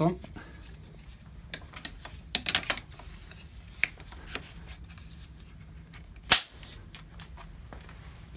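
Plastic carrycot adapters being fitted onto the aluminium frame tubes of a Mountain Buggy Urban Jungle pram: a run of small clicks and knocks, then one sharp snap about six seconds in.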